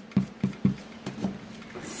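Foam sponge dauber tapping ink onto cardstock and scrap paper: a few quick taps about a quarter second apart, then stopping.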